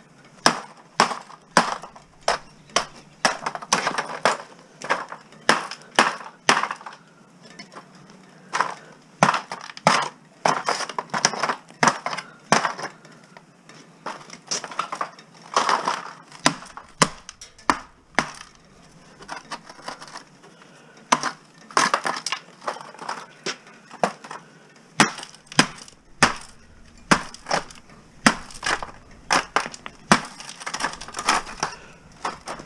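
Repeated hammer and bar blows on an aluminum extrusion lying on a concrete floor, knocking chunks of debris loose from it: sharp strikes about one or two a second, with a few short pauses.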